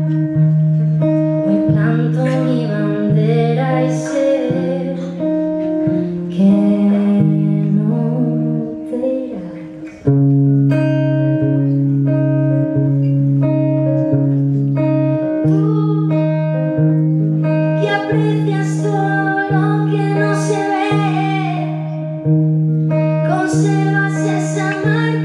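A woman singing live to her own acoustic guitar, with sustained chords under the melody. The music dips briefly about ten seconds in, then carries on.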